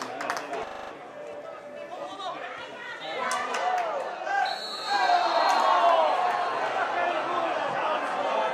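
Several voices shouting and calling over one another on a football pitch, growing louder about five seconds in, with a short, steady referee's whistle just before.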